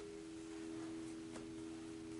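A faint, steady drone of a few held low tones, like a background meditation tone, with a faint click about two-thirds of the way in.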